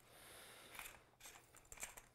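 Faint rubbing and a few light ticks as the metal suppressor tube of a TBA Sicario 22 is turned by hand on its threads onto the Ruger Mark IV.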